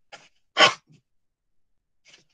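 A single short, sharp vocal burst from a man about half a second in, with a faint click just before it.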